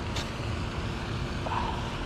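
Steady low background rumble outdoors, with a faint short click just after the start.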